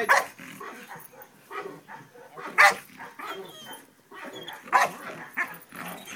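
Young Belgian Malinois barking in separate short bursts, the loudest about two and a half seconds in, with more near the end.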